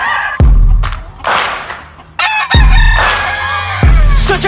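A rooster crows once, a long drawn-out crow in the second half, over hip-hop music with deep bass hits.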